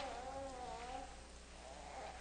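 A small child fussing: a drawn-out whine that wavers up and down in pitch, tails off after about a second, and starts again faintly near the end.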